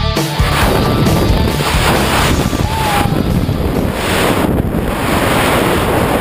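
Wind rushing hard over the handcam's microphone in a tandem skydive, heard as a loud, even noise as the jumpers fall and the parachute opens.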